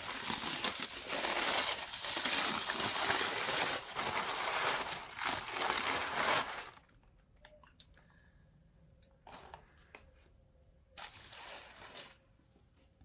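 Aluminium foil crinkling loudly as it is peeled open from around a baked pumpkin, for about seven seconds; after that, only a few brief, softer rustles.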